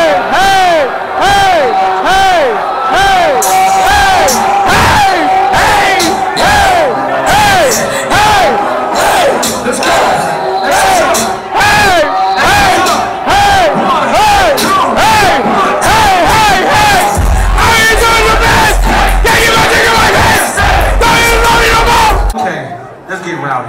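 A concert crowd shouting along over a loud live rap track with a steady beat and a repeating swooping sound. Deep bass comes in about 17 seconds in.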